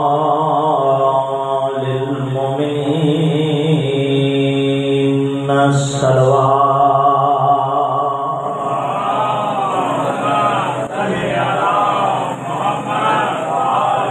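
A man's voice chanting a melodic religious recitation through a microphone and PA, with long drawn-out held notes for the first half, then a more winding, ornamented melody.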